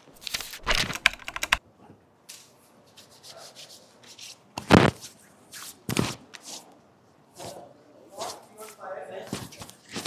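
Hands rubbing cream over the face and skin, picked up close by a clip-on mic: soft scuffs and rubs, a quick run of sharp ticks about a second in, and two louder knocks around the middle.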